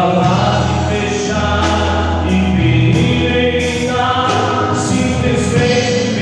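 A male singer sings a gospel worship song into a microphone over the church's sound system, with held notes. A band backs him with a steady bass line and regular cymbal strokes from a drum kit.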